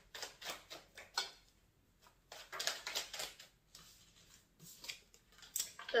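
Tarot cards being shuffled by hand and laid on a table: faint runs of quick card flicks and rustles in three short bursts, with brief pauses between them.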